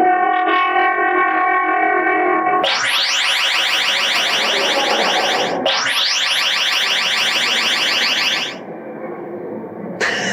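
Electronic sound message played back through an interactive exhibit table's speakers, assembled from chosen sound clips. It opens with a steady held tone for about two and a half seconds, then two runs of rapid rising electronic sweeps of about three seconds each, then drops quieter near the end.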